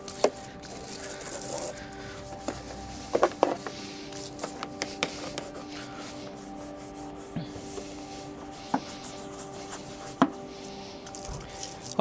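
A hand brush scrubbing dirt and grime off a motorbike, with a few sharp knocks of the brush against the bike. Steady background music plays under it.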